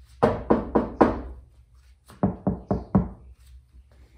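Fist knocking on a Toyota Tacoma's sheet-metal body: four quick raps on the untreated panel behind the door, which ring on after each hit. After a pause come four more raps that die away faster and duller, a door-knock test of bare metal against a door lined with butyl sound deadener.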